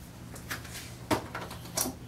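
A few short, light clicks and knocks of grooming tools being handled as a plastic clipper guard comb is picked out to fit over a #10 blade, over a faint steady low hum.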